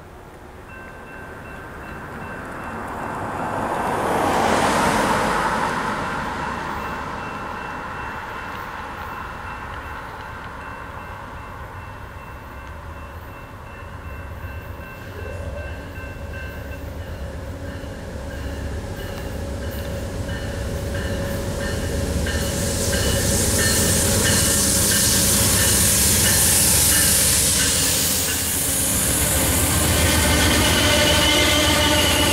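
Amtrak passenger train pulling into the station: the low rumble of the diesel locomotive builds, and near the end the cars roll past with a bright hiss and the squeal of braking wheels. A brief loud rush comes about five seconds in.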